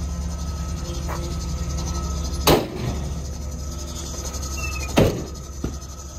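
Steady low hum of the van's 6.0-liter Vortec V8 idling, with two sharp knocks about two and a half seconds apart.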